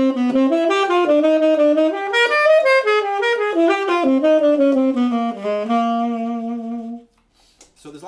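Unaccompanied tenor saxophone playing an improvised jazz line: a quick run of notes moving up and down that changes key partway, ending on a long held low note that stops about seven seconds in.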